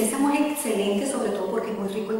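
Speech only: a woman talking in Spanish, which the transcript did not write down.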